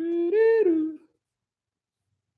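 A man humming a short tune, holding steady notes that step up and then back down. It stops abruptly about a second in, followed by dead silence.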